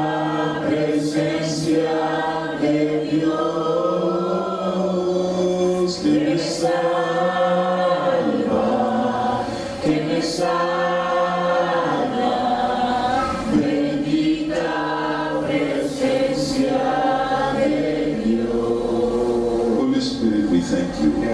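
Voices singing a slow worship song in long, held phrases with a wavering pitch, each phrase lasting a few seconds.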